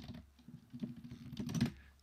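Typing on a computer keyboard: a quick run of light key clicks, growing a little louder toward the end.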